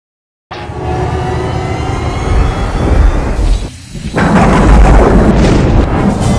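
Cinematic trailer sound design: music with a deep rumble starting half a second in, a short drop-out, then a heavy boom-like hit about four seconds in that rumbles on loudly.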